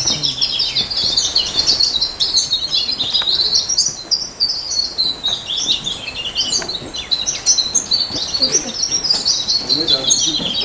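A flock of small birds chirping constantly, many short high-pitched calls overlapping without a break.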